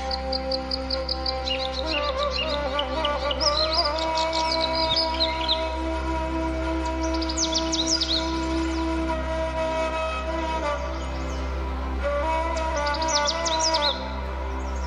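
Dance accompaniment music: a flute plays a slow, wavering melody over a steady low drone, while quick high bird chirps come in several short clusters.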